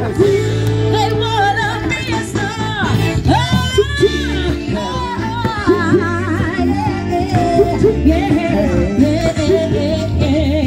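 Live band music with a lead singer whose voice bends and wavers over a steady bass line.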